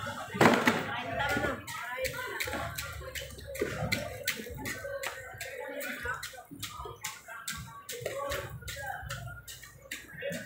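Indistinct talk from people nearby, with a run of sharp knocks or slaps, a few a second.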